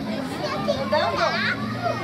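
Children playing outdoors: overlapping children's voices and chatter, with one loud, high-pitched child's cry about a second in.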